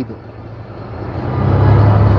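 An engine's low rumble that grows louder about a second in and then holds steady.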